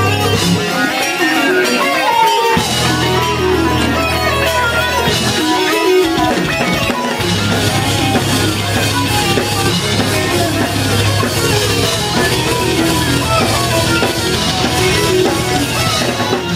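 Progressive metalcore band playing live: loud electric guitars and drum kit. The low end drops out twice for about two seconds, near the start and around six seconds in, leaving the guitars on their own before the full band comes back in.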